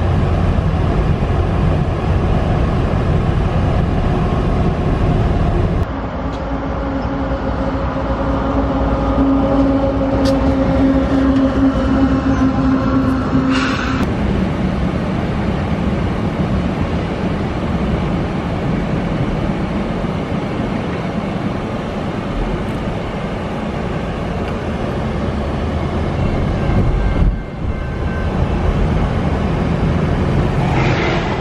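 Freight train running past, its diesel locomotives and rolling tank cars heard from inside a moving car over road and engine noise. A steady hum holds from about six to fourteen seconds in.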